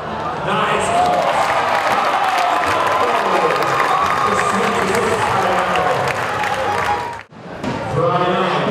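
Basketball crowd in a sports hall cheering and applauding after a shot at the basket. The sound cuts off abruptly about seven seconds in.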